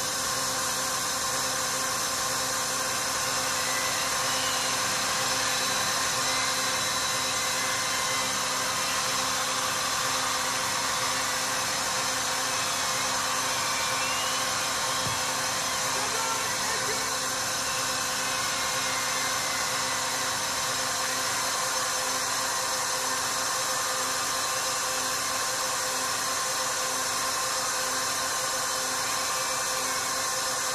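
Steady noise of a large outdoor festival crowd with the music stopped, a constant wash of many voices at an even level.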